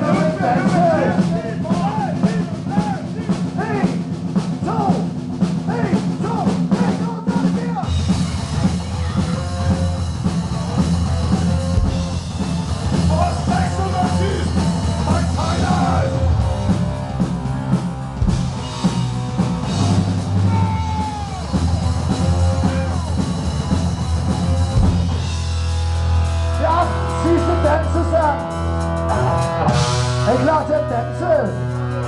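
Live rock band playing, with electric bass, electric guitar and a drum kit. It opens on held low notes with bending higher notes over them, and the drums and bass come in hard about eight seconds in.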